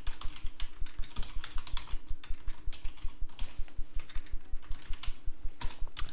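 Typing on a computer keyboard: a quick, steady run of keystrokes, several clicks a second.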